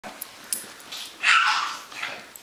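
A small dog gives a single short bark about a second and a quarter in.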